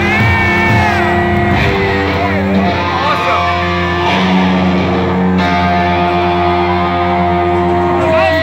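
Rock band playing live and loud, heard from the audience in a concert hall: guitars with sustained, bending notes over bass and drums.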